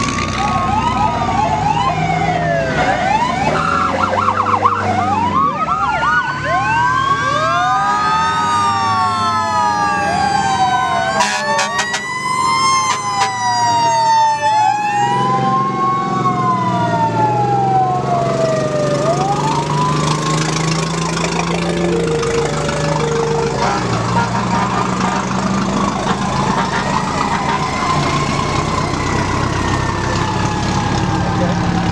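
Several fire truck sirens wailing at once, each rising and falling in pitch and overlapping one another, with a quick yelp a few seconds in, over the running of truck engines. The sirens thin out in the second half.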